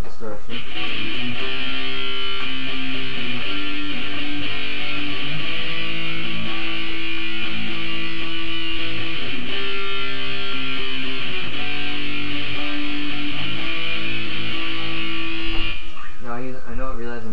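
Electric guitar with light amp distortion, strumming chords and letting them ring. The chords change every few seconds, and the playing stops at the very end.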